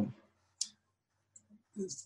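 A pause in talk with a single short, sharp mouth click about half a second in and a fainter tick later, before the voice starts again near the end.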